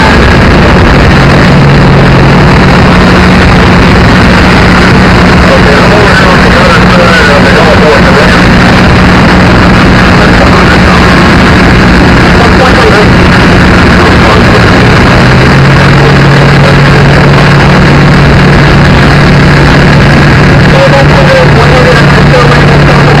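Loud, steady engine noise from idling fire apparatus, with a steady low hum under a dense, distorted din and indistinct voices.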